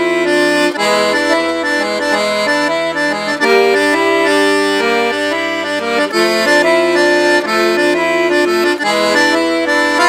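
Excelsior Accordiana piano accordion with a two-reed (LM) treble and 120-bass left hand, played as a tune: a right-hand melody over sustained bass notes and chords that change every few seconds.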